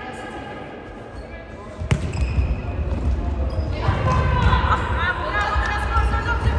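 A ball is struck once sharply about two seconds in, a futsal ball in play. After it the hall gets louder, with overlapping shouting voices and a low rumble of movement.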